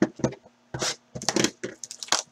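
Plastic shrink wrap being torn and crinkled off a sealed trading-card hobby box, in a quick irregular series of short rustling rips.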